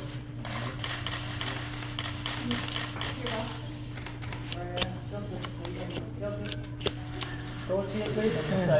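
Scattered camera shutter clicks over low voices in the room and a steady low hum.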